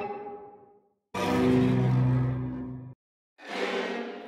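Creepy cello effects played in an unnatural way, in three swells: one fading out within the first second, a loud held note of about two seconds in the middle, and a third coming in near the end and fading.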